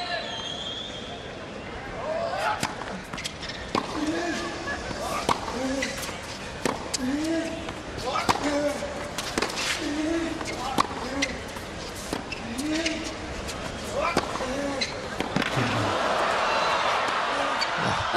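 Tennis rally on a hard court: sharp racket-on-ball strikes and ball bounces in a steady back-and-forth, each stroke joined by a short grunt from the hitter, about one a second. Near the end the crowd cheers and applauds as the point finishes.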